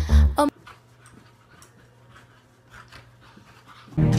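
A burst of music cuts off abruptly about half a second in. It is followed by quiet room sound with faint sounds from a dog.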